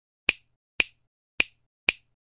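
Four finger snaps, about half a second apart, each short and sharp with silence between.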